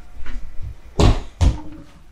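Three short knocks and clatters of a bottle being handled in a stainless-steel kitchen sink. The loudest is about a second in, and a smaller one follows just after.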